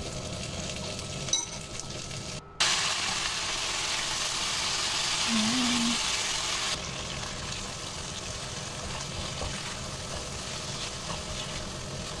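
Chicken strips and lemon slices sizzling in oil in a nonstick frying pan while a spatula stirs them. The sizzle cuts out for a moment a couple of seconds in, then comes back louder for about four seconds before settling to a steady level.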